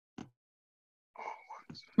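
Near silence on a video-call line, broken by a short faint blip and then faint, whispery voice sounds in the last second.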